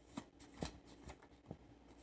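A deck of cards being shuffled by hand, faint, with a few soft flicks and taps.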